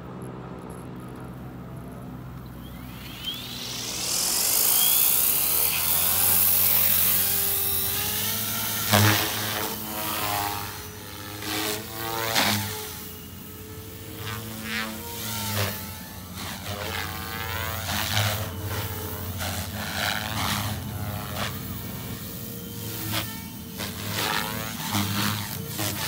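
Radio-controlled Protos 380 electric helicopter: its rotor spools up with a rising whine a few seconds in, then the rotor and motor sound swells and fades as it flies maneuvers, with sharp surges as the blades load up.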